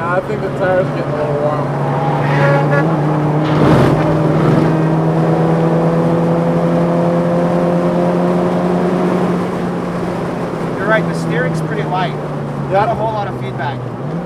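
Tuned VW MK5 GTI's turbocharged 2.0-litre four-cylinder heard from inside the cabin under hard track driving, its engine note climbing slowly through a long pull and easing off near the end. A brief loud noise comes about four seconds in.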